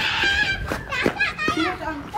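Children shouting and calling out in high voices while playing football, with a few short sharp knocks in the second half.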